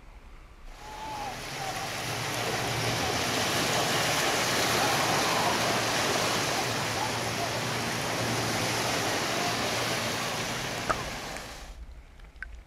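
Rushing, churning water of shallow surf heard on an underwater camera, swelling up about a second in and fading away just before the end. A single sharp click comes near the end.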